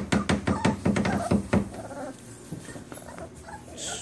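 Five-week-old puppies whimpering and squeaking: a quick run of short, sharp sounds over the first second and a half, then fainter whines.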